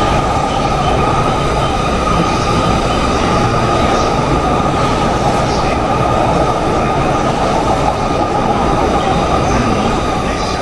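Electric passenger train running past a station platform: a steady rumble of wheels on rails with a steady high whine over it.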